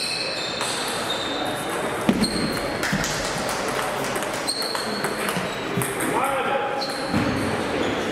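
Table tennis rally: the celluloid ball clicking sharply off rackets and the table several times, the loudest hit about two seconds in, over a background of voices and more ball clicks from other tables in a large echoing sports hall.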